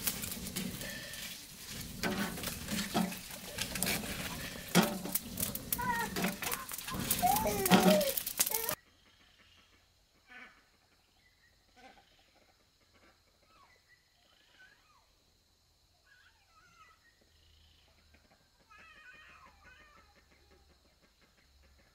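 A wood fire crackling under a cooking pot, with sharp snaps and a few short wavering animal calls. About nine seconds in the sound cuts abruptly to a much fainter outdoor background of scattered chirps over a steady high hiss.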